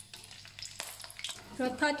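Raw peanuts sizzling in hot oil in a wok as they begin to deep-fry, with a few sharp pops in the middle.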